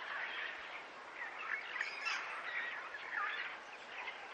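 Faint bird calls, short scattered chirps, over a soft outdoor background hiss.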